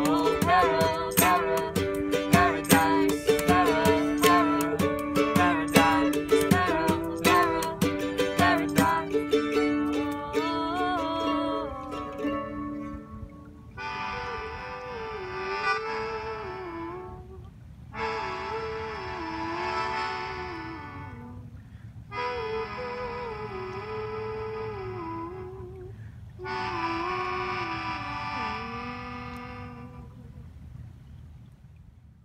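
Acoustic instrumental outro: a cajon beat with mandolin strumming for about the first twelve seconds, then the cajon stops. A melodica plays four short phrases of the melody over soft mandolin, and the music grows quieter toward the end.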